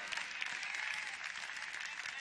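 Church congregation applauding, a steady clapping of many hands.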